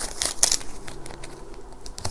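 Paper banknotes rustling and crinkling as they are handled and slid into a clear plastic zipper pouch, with a cluster of sharper crinkles about half a second in.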